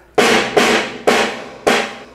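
Acoustic drum kit picked up by a Yamaha EAD10 drum mic system with reverb added: four hard hits about half a second apart, each fading out in a long reverb tail.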